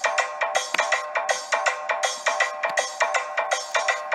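Instrumental interlude of a Haryanvi devotional bhajan: a bright electronic keyboard plays a quick melody of short notes, about four or five a second, over light percussion.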